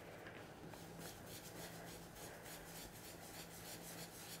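Faint, rhythmic swishing of a Picket Fence blending brush rubbed in quick, even strokes over cardstock, working Distress Oxide ink onto the paper.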